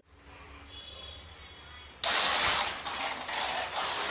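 Homemade model electric train running on its foil track, a rough rattling mechanical noise that starts abruptly about two seconds in, after a faint opening.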